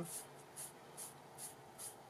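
A sponge wiping white gesso across a kraft-paper tag: about six faint, soft brushing strokes, one every 0.4 seconds or so.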